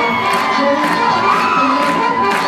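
A crowd cheering and whooping loudly, with swing jazz music playing underneath.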